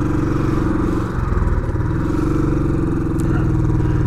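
Royal Enfield Classic 500's single-cylinder engine running at low revs while the bike is taken slowly through a tight turn. There is a brief dip in level about a second in.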